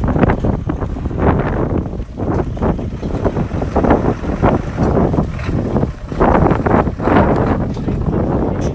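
Wind buffeting the microphone of a handheld phone, a loud uneven rumble that swells and drops in gusts.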